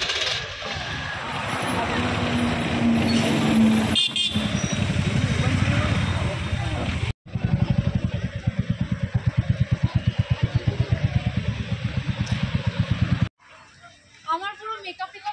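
Busy outdoor crowd chatter mixed with vehicle noise. About halfway through, after a cut, the fast, even low throb of an engine idling close by.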